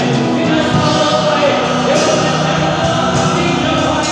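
Live gospel worship music: a male singer leads into a microphone over musical accompaniment, with other voices singing along like a choir.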